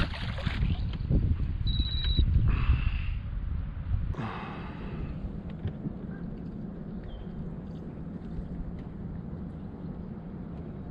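A released crappie splashes back into the lake beside the boat at the very start. A short high beep comes about two seconds in. Then there is steady wind and water noise around the boat with a low hum.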